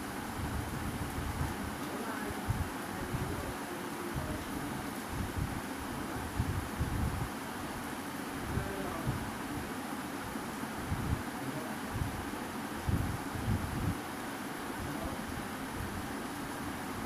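Quiet, steady background hiss with soft, irregular low thumps and rumble; no distinct event stands out.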